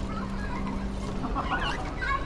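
Young children squealing and calling out in short, high chirps, thickest near the end, over a low steady hum that fades about a second in.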